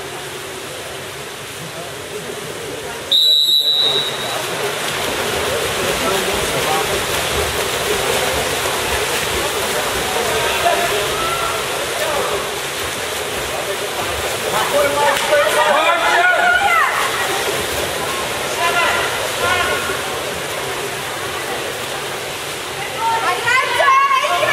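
A referee's whistle gives one short, high blast about three seconds in, followed by the steady wash of splashing water in an echoing indoor pool hall. Voices shout out now and then, loudest near the end.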